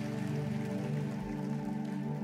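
Worship band's soft instrumental intro: sustained keyboard pad chords held steady, with no voice and no drum hits.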